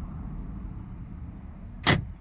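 The car's power door locks clunk shut once, sharply, a little under two seconds in, in answer to the lock command from the smartwatch key. A low steady rumble runs underneath.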